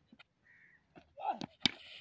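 Mostly quiet, with a brief snatch of a voice about a second and a half in and two sharp clicks close together just after it.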